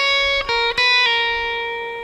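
Epiphone SG electric guitar playing a short single-note lead on the high E string: quick notes at the 6th, 9th, 6th and 7th frets, then a pull-off back to the 6th fret. That last note is held from about a second in and rings out, fading.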